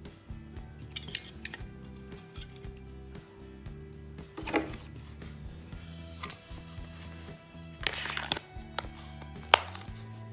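Background music with steady held notes, under a few short plastic clicks and rustles as a Sony RMF-TX300P remote control's circuit board and casing are handled and fitted back together. The sharpest click comes near the end.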